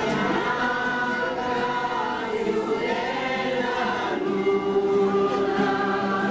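Many voices singing a slow religious hymn together, with long held notes that change pitch every second or two.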